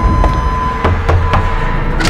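Knocking on a wooden door, several separate raps, over background music.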